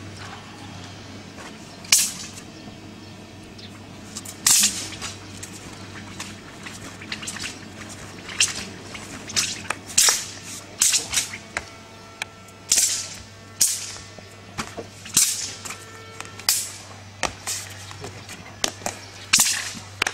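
A dao (Chinese broadsword) swishing through the air in more than a dozen quick cuts spread irregularly through the form, a few of them with a sharp crack-like onset, over a low steady hum.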